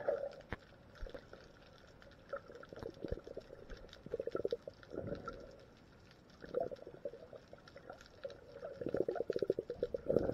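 Water bubbling and gurgling as picked up by a camera held underwater, in irregular short bursts, the longest and loudest near the end.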